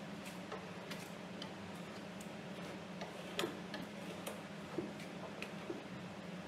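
Irregular soft taps and clicks, one or two a second, from a gloved hand dabbing and rubbing paint onto a stretched canvas, over a steady low hum.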